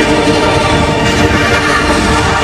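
Logo jingle audio heavily distorted by editing effects: a loud, dense, steady wall of sustained tones over harsh noise.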